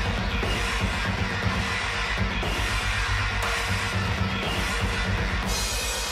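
Heavy post-hardcore band recording playing, with rapid, evenly spaced kick-drum strokes under a dense, loud wall of sound.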